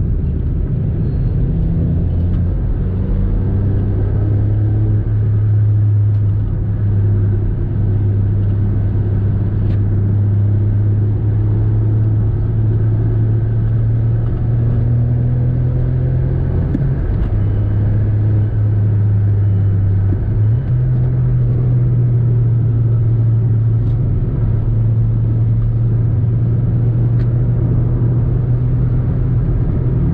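Steady engine and road drone of a Volkswagen car cruising at highway speed, heard from inside the cabin. The engine's note shifts slightly about twenty seconds in.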